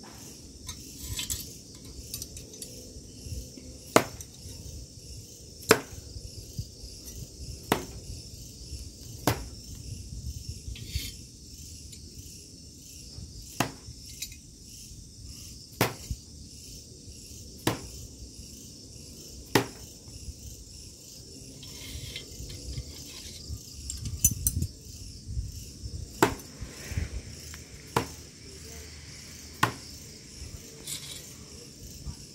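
Small steel throwing knives hitting an end-grain wooden block target, one sharp thud about every two seconds, with a quicker cluster of hits near the end. Crickets chirp steadily in the background.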